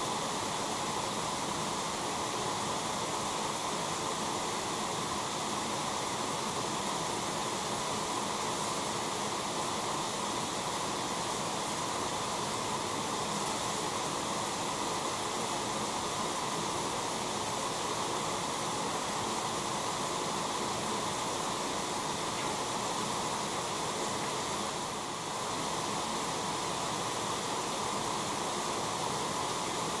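Water spraying steadily from a rinse hose wand onto a freshly dipped part over a hydrographics tank, rinsing off the film residue, with a brief lull about 25 seconds in.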